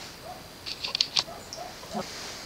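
A quick cluster of light clicks and taps about a second in, small pieces being set down on a wooden tabletop, over faint bird calls in the background.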